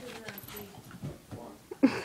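A Boston Terrier at play with a toy, letting out one short, loud vocal sound just before the end, over quieter faint sounds.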